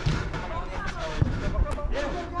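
Indistinct voices of players calling out across an open football pitch, with a few short low thumps on the camera microphone.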